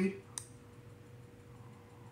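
Quiet room tone with a faint steady hum, broken by one short click about a third of a second in.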